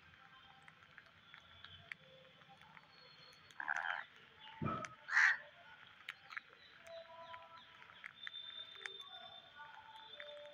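A flock of rose-ringed parakeets feeding on scattered rice: many light clicks of beaks picking up grains, with two short harsh squawks near the middle and a low thump between them.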